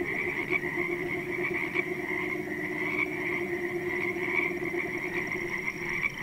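A dense chorus of frogs calling steadily, many overlapping croaks forming a continuous pulsing drone.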